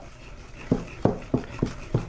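Wire whisk beating cream cheese frosting by hand in a bowl, the whisk knocking against the side of the bowl about three times a second from partway in.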